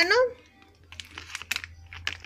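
A plastic pouch of dried cranberries being picked up and handled, giving a few light crinkles and clicks in the second half.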